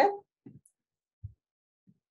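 The tail of a spoken word, then three faint, dull, low-pitched thumps spaced about two-thirds of a second apart.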